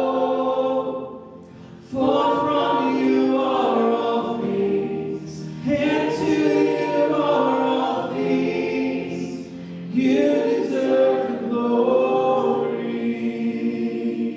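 A worship song sung by many voices with a female lead, the voices carrying over a soft band accompaniment. After a short lull near the start, sung phrases swell in again about two, six and ten seconds in.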